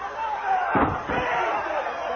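Two heavy thuds on a wrestling ring's canvas, close together about a second in, as a wrestler's blows land on a downed opponent.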